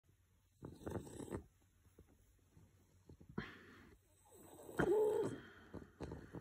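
Sleeping English bulldog breathing noisily in three separate bouts, the last about five seconds in with a short pitched grunt.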